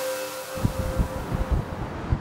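The end of an electronic news jingle fading out with a held tone. From about half a second in, a low, irregular rumble of wind buffeting the microphone outdoors.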